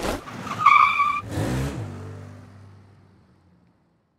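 Logo-animation sound effect of a vehicle pulling away: a swish, a brief high squeal, then an engine driving off, falling in pitch as it fades out.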